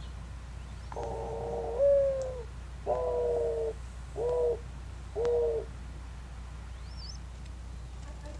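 Mourning dove cooing its song: one long, low note with a rise in pitch, then three shorter coos about a second apart. It is the parent's call that announces feeding time to the squabs.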